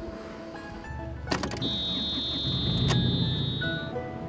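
A JCB loader's diesel engine starting and running with a low rumble from about a second in, marked by a sharp click, and a steady high-pitched cab warning beep lasting about two seconds. Background music plays underneath.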